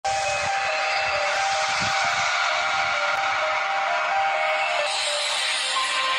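Intro sound effect: a steady rushing hiss with several sustained tones in it. It turns brighter about five seconds in, where a new held tone begins, leading into music.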